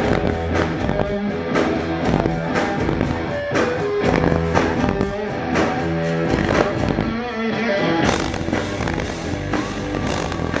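Live rock band playing the instrumental introduction of a song: an electric guitar riff over drums and bass. It is loud and steady.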